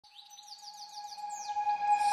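Bird-like chirps, a quick run of short sweeping notes, over a steady held tone, swelling from faint to loud as a music track fades in.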